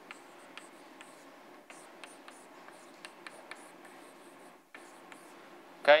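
Chalk on a blackboard while an equation is written: a string of light, irregular taps and short scratches, fairly faint.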